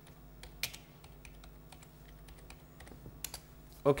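Computer keyboard typing: irregular, scattered key clicks as a short phrase is typed, over a faint steady low hum.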